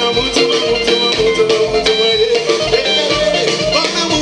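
Live band playing loud, upbeat dance music: guitar and other melody parts over a steady drum beat.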